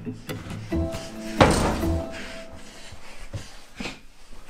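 Background music, with an interior door shut hard once about one and a half seconds in, a single loud thud that rings briefly.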